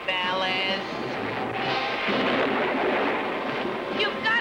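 Cartoon thunderstorm sound effect: a dense, steady rumble and crackle of lightning, with a wavering tone in the first second and music underneath.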